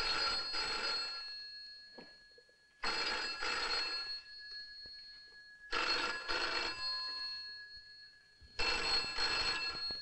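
Telephone bell ringing, four rings about three seconds apart.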